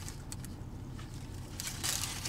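Paper sandwich wrapper crinkling and crackling as a burger is handled and bitten into, faint at first and louder near the end, over a steady low hum in the car.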